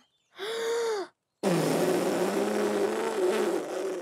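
A cartoon crocodile taking a short breath, then blowing one long, strained breath with a wavering hum through a bubble hoop as a giant soap bubble swells.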